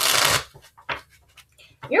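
A deck of tarot cards shuffled by hand: one loud rush of cards lasting under half a second, then a few faint taps of the cards.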